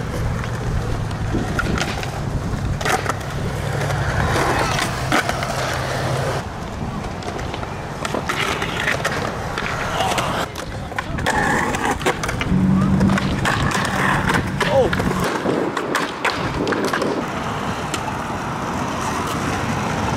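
Skateboard wheels rolling over smooth concrete with a steady low hum, broken several times by sharp clacks of the board hitting the ground.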